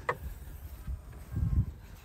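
A short laugh, then low rumbling of wind on the microphone, with a stronger gust about a second and a half in.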